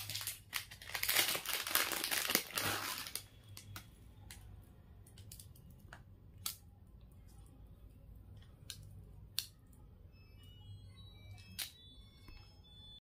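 Plastic packaging crinkling and rustling for about three seconds, then a few scattered light clicks and taps.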